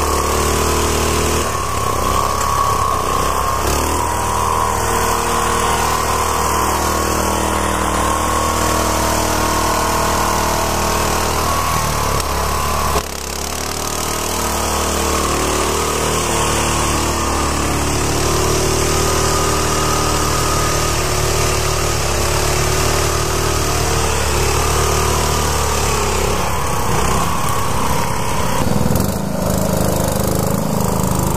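Small garden tractor engines running steadily as the tractors are driven through mud, with a sudden break in the sound about 13 seconds in.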